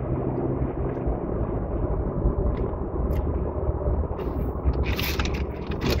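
Steady low rumble of a car running, heard from inside its cabin, with a short rustling sound near the end.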